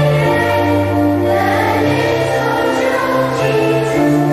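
Children's choir singing held notes over a low, sustained accompaniment.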